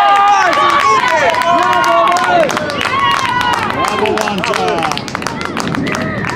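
Spectators on a rugby sideline shouting and yelling encouragement over one another in long, drawn-out calls. Scattered clapping joins in from about three seconds in.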